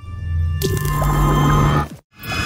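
Channel-logo intro sting: sound-designed music with a deep low drone that builds from the start, a sudden hit about half a second in, and a sustained wash that stops abruptly just before the end.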